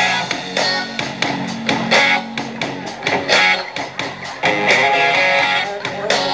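Live rock band playing an instrumental passage: electric guitar strumming chords over bass and drums, with no singing.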